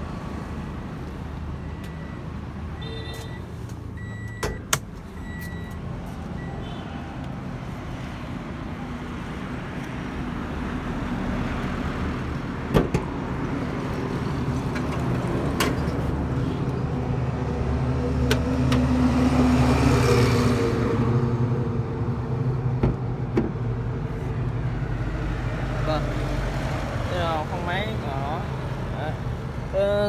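Handling noises of a 2016 Toyota Vios as its bonnet is opened: a few short high beeps near the start, a sharp click about four seconds in and another about thirteen seconds in, over a steady low rumble of outdoor traffic. A vehicle's noise swells and fades around twenty seconds in.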